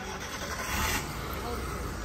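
Rubbing and rustling handling noise from a hand-held phone being moved about, with a low rumble underneath; it swells for a moment within the first second.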